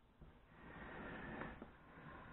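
Faint handling of a small electric deep fryer (a FryDaddy) on a countertop: a light click, then a second or so of soft scraping and knocking as the pot is taken by its handle and shifted.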